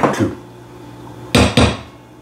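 Two sharp knocks about a quarter second apart: a spatula and bowls being handled while chopped egg is scraped into a stainless steel mixing bowl.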